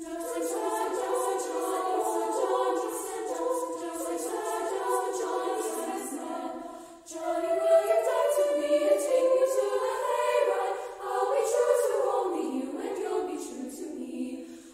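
High school women's choir singing in three treble parts (SSA). A short break about seven seconds in is followed by a louder phrase.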